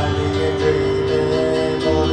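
Electronic keyboard playing sustained chords while a man sings into a microphone.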